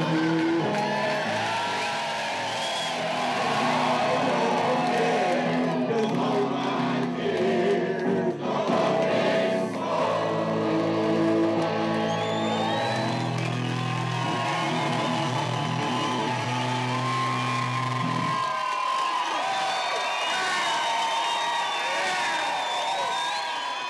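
A live song on stage: singing over electric guitar ending on a long held chord, which cuts off about 18 seconds in. Through the song's last bars and after it, the audience cheers, whoops and claps.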